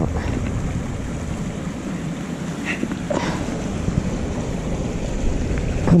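Wind buffeting the microphone outdoors, a steady low rumble, with a brief faint noise about three seconds in.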